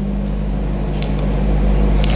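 Steady low electrical hum in the microphone and sound system during a pause in speech, with a few faint clicks.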